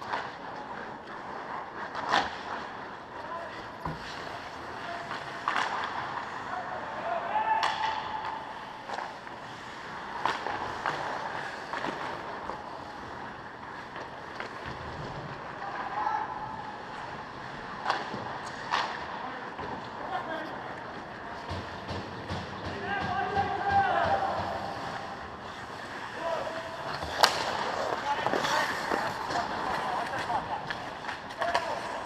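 Indoor ice hockey rink: skate blades scraping and carving the ice, with sharp cracks of sticks and pucks every few seconds, the loudest near the end, and voices calling out across the rink.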